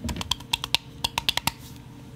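A quick run of about a dozen sharp clicks from computer keyboard keys, ending about a second and a half in.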